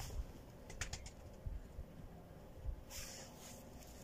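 Pigeons cooing faintly, with a few light clicks about a second in and a short rustle near three seconds as a bottle and a head of garlic are handled.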